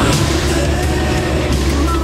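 Formula Three racing cars' engines running at speed, mixed under a music soundtrack.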